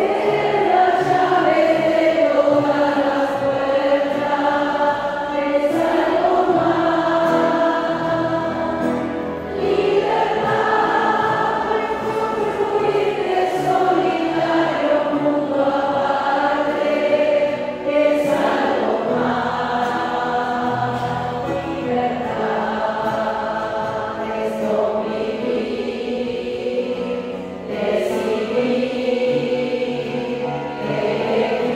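A congregation of women singing a hymn together, in long held phrases over a musical accompaniment.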